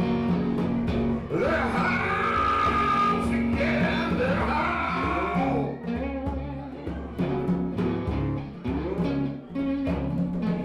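Live acoustic rock: a man singing into a microphone over a strummed acoustic guitar. The singing fades after about six seconds while the guitar keeps strumming.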